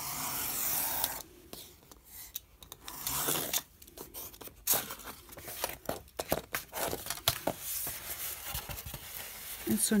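A craft knife drawn along a ruler, slicing through a sheet of white board with a scraping, tearing sound for about the first second. Then rustling, clicks and knocks as the cut board and ruler are handled.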